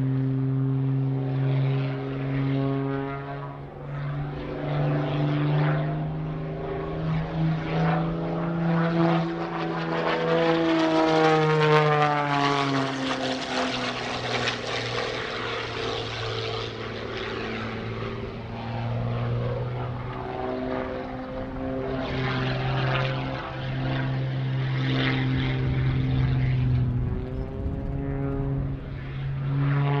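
MXS-RH single-engine propeller aerobatic plane flying aerobatics, its engine and propeller note shifting up and down in pitch as it manoeuvres. It is loudest about twelve seconds in, as it passes close and the pitch sweeps.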